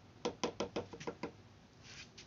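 A quick run of about eight light, hard knocks over a little more than a second, then they stop: an etched circuit board being tapped against the rim of a plastic etching tub.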